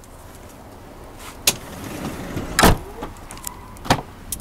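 Doors of a 2015 Chrysler Town & Country minivan being worked: a sharp click, then a loud, heavy door shutting a little past the middle, then a last latch click near the end.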